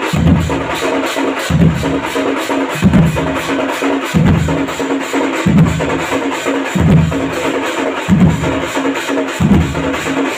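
Odia street drum band playing: fast drumming and cymbals over a deep bass-drum beat that falls about every second and a quarter, with a steady held note underneath.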